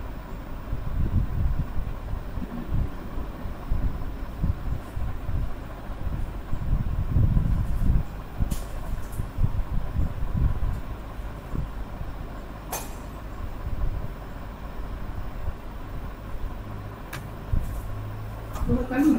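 An uneven low rumble of background noise heard through a video call's microphone, with three sharp clicks, the first about halfway through and the last near the end.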